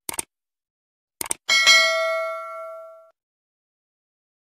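Subscribe-button animation sound effects: a quick double mouse click, another double click about a second later, then a notification bell ding that rings out for about a second and a half.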